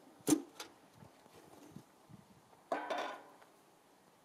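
Handling of a metal tin of bitumen blacking and a long-handled brush: a sharp knock about a third of a second in and a lighter click just after, then a short rasping sound about three seconds in.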